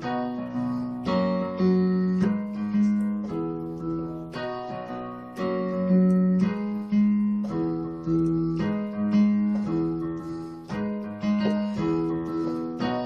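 Yamaha Portable Grand digital keyboard on a piano voice, both hands playing a slow gospel chord progression (A-flat minor, E, B, F-sharp). A new chord is struck about once a second and left to ring and fade.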